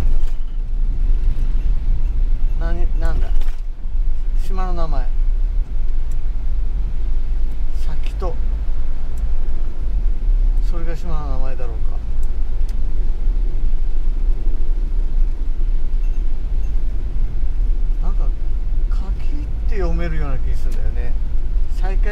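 Steady in-cabin road noise from a camper van driving on a wet road: a low rumble of engine and tyres with a hiss of tyres on the wet surface.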